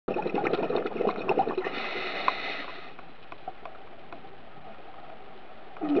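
Water bubbling and gurgling with a dense crackle, then settling to a quieter steady hiss about halfway through.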